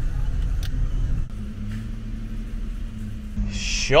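A Fiat 500's engine running at low revs while the car moves slowly, a steady low hum.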